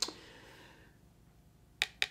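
A single sharp click with a short hiss trailing after it, then near silence until a few quick, sharp clicks just before the end.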